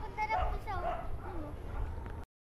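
Strong wind buffeting the microphone, a steady low rumble, with several short high whining calls that slide downward in pitch.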